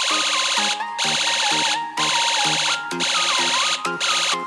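UM3561 siren-sound-generator circuit sounding through a small loudspeaker, switched by a push button to another of its tones. The sound comes as dense, buzzy bursts about a second long, four in a row with short breaks. Background music with a simple melody plays under it.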